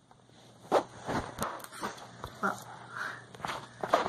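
Handling noise: a string of soft, scattered knocks and rustles as the handheld phone camera is moved about over the rug.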